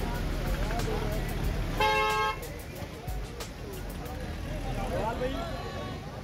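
Busy street noise with crowd voices and traffic, cut by one short horn blast about two seconds in, the loudest sound.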